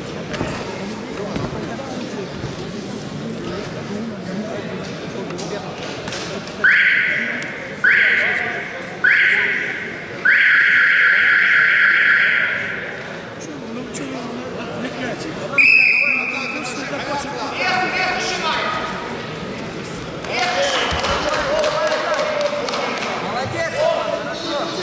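In a large sports hall, a signal buzzer sounds three short blasts about a second apart and then one long blast. A few seconds later a single short referee's whistle starts the wrestling bout, followed by shouting from coaches and spectators.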